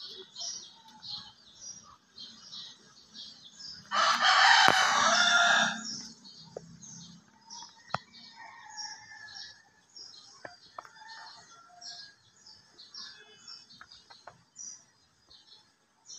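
A rooster crows once, loud and about two seconds long, some four seconds in, over a faint high chirping that repeats about twice a second.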